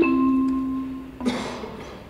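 Chime of a council chamber's electronic voting system, signalling the vote: the last note of a descending series of mellow, bell-like tones rings out and fades away over about a second. A short burst of noise follows.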